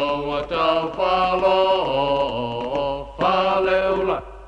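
Chanted singing: voices holding long sung 'oh' notes in phrases, with brief breaks about half a second in and about three seconds in.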